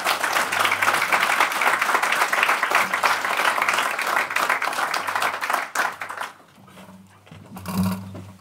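Audience applauding, a dense patter of many hands clapping that dies away about six seconds in.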